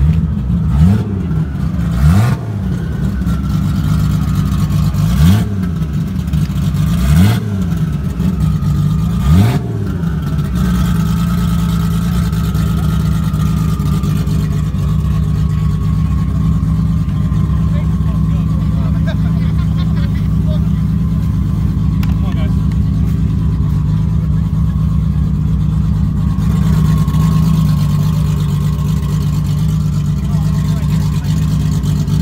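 Street-race car engine idling loudly, blipped up and down in about five quick revs during the first ten seconds, then settling into a steady, lumpy idle.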